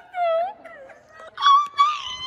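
A teenage girl's wordless playful vocal wail, a short held cry followed about a second and a half in by a louder, higher-pitched drawn-out squeal.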